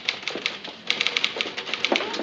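Typewriter being typed on rapidly, a quick run of sharp key strikes with a brief pause about half a second in.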